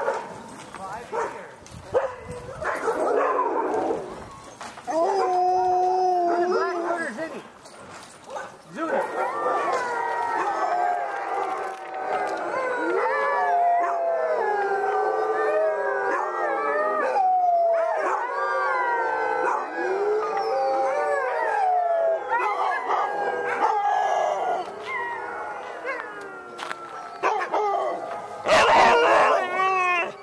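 A yard of sled dogs howling together: many long, wavering howls overlapping at different pitches, one dog's howl first, then the whole group joining in, with a few barks and yips. It is louder and rougher near the end.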